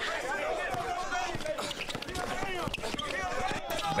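Pickup basketball game: several players and onlookers talking and calling out over each other, with a basketball bouncing on the court.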